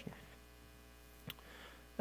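Low, steady electrical mains hum during a pause in speech, with a single short click a little past halfway.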